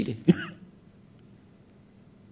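A man clears his throat in two short rasps right at the start, then only a faint steady hiss remains.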